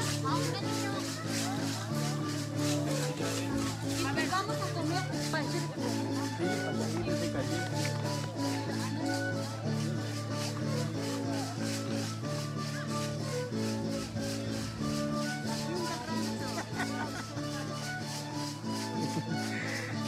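Live music for a traditional danza: a melody of held notes stepping up and down over a steady low note, with the dancers' hand rattles shaking in a quick, even rhythm of about four shakes a second. Voices of the crowd are heard underneath.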